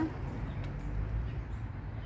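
Outdoor background: a steady low rumble with faint bird chirps.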